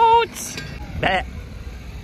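A single short, quavering, goat-like "baa" bleat about a second in.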